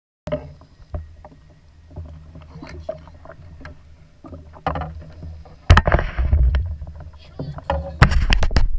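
Knocks and bumps of handling against a plastic fishing kayak over a steady low rumble of wind and water on an action camera, as a small shark is lifted aboard. A loud, short rush like a splash comes near six seconds in.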